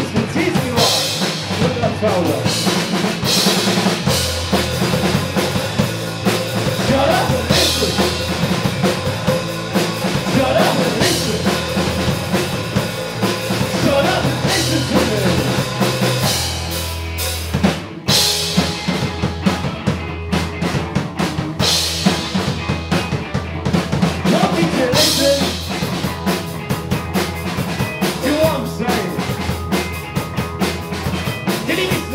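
Live rock band playing: a drum kit with bass drum and snare, an electric guitar and a bass guitar. The music dips briefly just past halfway, then the full band comes back in with cymbal crashes.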